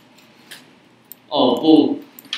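A voice speaking Mandarin briefly starts about a second and a third in, after a short quiet pause broken by a couple of faint clicks.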